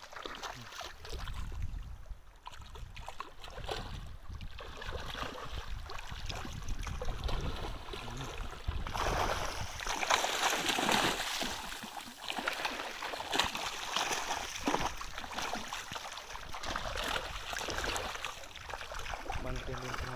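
Shallow, muddy water splashing and churning, loudest from about nine to twelve seconds in, when fish thrash at the surface among the mangrove roots.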